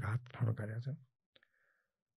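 A man's speech trailing off in the first second, then near silence broken by one faint click with a short faint tone about a second and a half in.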